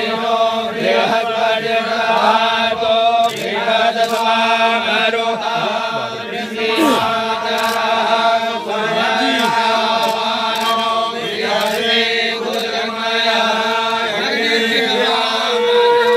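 Hindu priests chanting mantras together in a continuous rhythmic recitation over a steady held tone.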